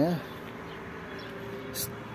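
A faint, steady buzzing hum on one held pitch, with a brief hiss near the end.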